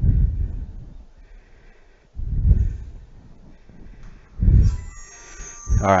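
A man's heavy exhales puffing into a headset microphone, three times about two seconds apart, with faint breathing between them, as he works through the last repetitions of a dumbbell exercise.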